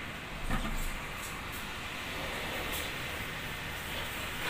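Steady low background rumble with one brief soft knock about half a second in.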